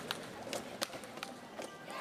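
Table tennis rally: the celluloid ball clicks sharply off the bats and table, about two to three hits a second, over the murmur of a hall crowd.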